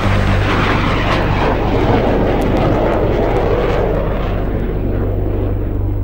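Jet aircraft roar sampled in a trance track: a loud rushing noise that swells and then fades away over the last couple of seconds. A steady low bass drone from the track runs underneath.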